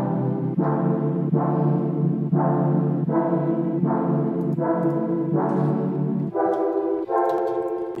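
A work-in-progress electronic track played back from FL Studio: sustained chords change every second or so over a low bass layer, which drops out about six seconds in, leaving only the higher chords.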